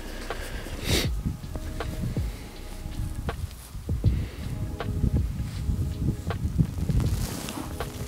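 Close rustling and soft knocking of a jacket and hands moving against a clip-on microphone while fishing line is wrapped into a knot, with many small irregular clicks.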